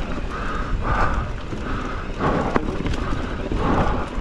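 Wind rumbling on the camera microphone as a mountain bike rolls and rattles over a bumpy grass trail, with a rhythmic rushing pulse about every two-thirds of a second and a single sharp click about two and a half seconds in.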